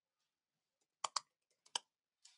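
Computer keyboard keystrokes: four short, sharp clicks in two quick pairs, about a second in and again near the end, as a word is typed.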